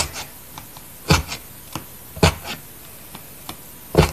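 Felting needle stabbing through wool into a foam pad: a few short, sharp jabs, the louder ones about a second apart, with fainter ones between.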